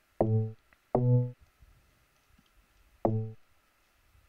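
Teenage Engineering PO-14 Sub pocket bass synthesizer playing three short low notes, each about a third of a second long. The first two come close together, and the third comes about two seconds later.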